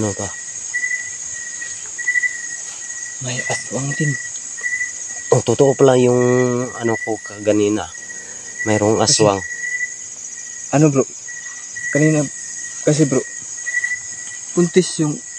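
Night insect chorus of crickets trilling steadily and high-pitched, with a second insect chirping in short regular pulses about once a second.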